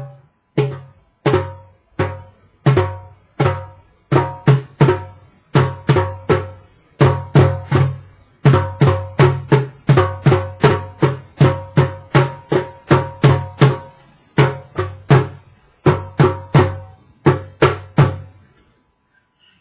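Two djembes played with bare hands, one closely copying the other's strokes. The strokes come about a second apart at first, then quicken to a steady run of roughly three a second. Each stroke has a deep boom and a ringing tone.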